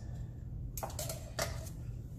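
Three light clicks of metal kitchen tongs against a stainless steel mixing bowl as coleslaw is lifted out, the first a little under a second in.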